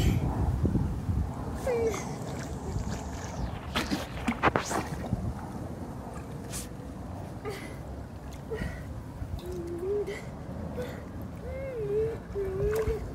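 Pool water sloshing and lapping as a swimmer moves in it, with a few sharp splashes about four seconds in. Wind rumbles on the microphone, most strongly at the start.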